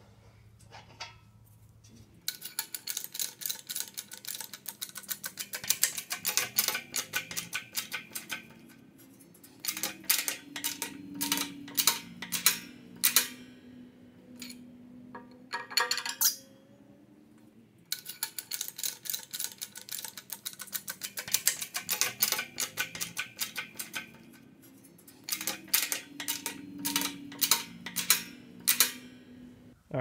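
Background music with a fast clicking beat and a low bass line, dropping out briefly a few times.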